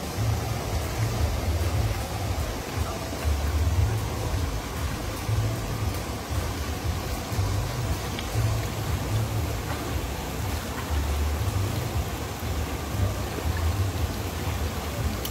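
River water running over rocks, a steady rushing with an uneven low rumble beneath it.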